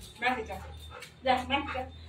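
A large dog whining and yipping in two short calls, about a quarter-second in and again past the one-second mark, while being told to sit. A low steady hum runs underneath.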